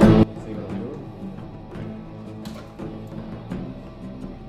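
Background music with guitar, loud for the first instant and then dropping sharply to a much quieter level, with a few faint clicks.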